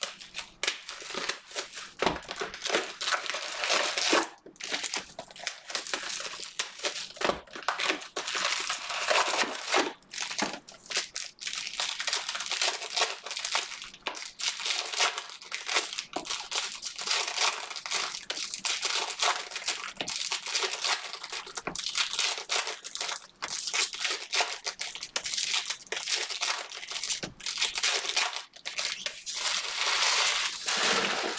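Plastic shrink-wrap and foil packs of Panini Prizm basketball cards crinkling and tearing as the hobby boxes are unwrapped and the packs handled. It is a continuous crackle with many sharp rustles.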